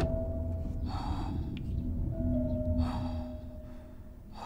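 Drama background score holding quiet, sustained low notes, with three breathy hisses about two seconds apart.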